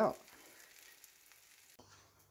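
An omelette sizzling faintly and steadily in a buttered frying pan. Just before the end it gives way abruptly to a low hum.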